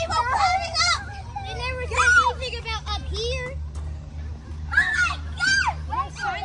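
Children shouting and calling out to each other while playing on a playground spinner, with many high-pitched voices overlapping. A steady low hum runs underneath.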